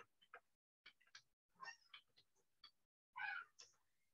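Near silence with faint, scattered short ticks of keyboard typing, and one brief faint pitched call-like sound about three seconds in.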